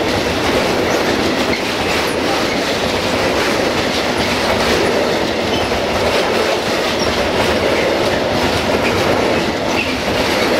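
Wagons of a freight train rolling past close by: a steady rolling noise of steel wheels on the rails, with clatter over the rail joints.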